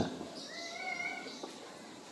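A faint, short, high-pitched cry lasting under a second, rising slightly and falling away, in a pause in the lecture.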